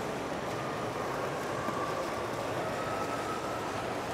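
Steady ambient noise of a large indoor shopping-mall atrium, an even wash of sound with a faint held tone.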